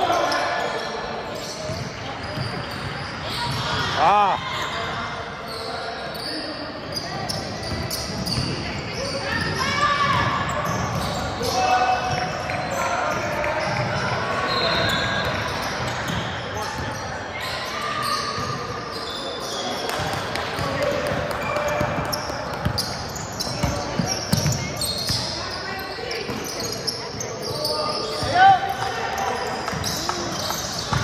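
Indoor basketball game sounds echoing in a large gym: a basketball bouncing on the hardwood floor, voices calling out, and sneakers squeaking, with two sharp squeaks, one about four seconds in and one near the end.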